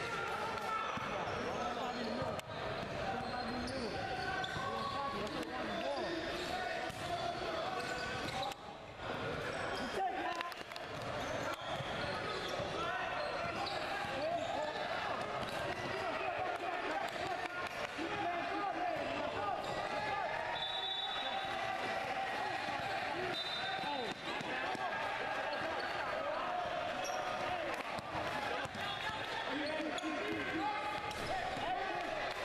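Live game sound from an indoor basketball court: a ball bouncing on the floor, with many players and spectators talking and calling out over each other.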